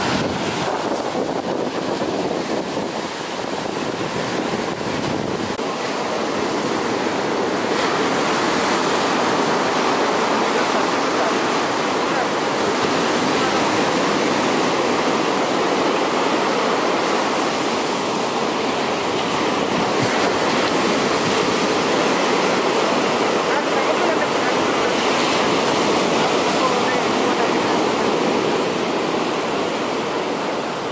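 Ocean surf breaking on a beach: a steady rushing wash of waves.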